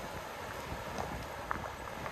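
Wind and breaking surf on a rocky shore, with footsteps on loose beach rock about every half second.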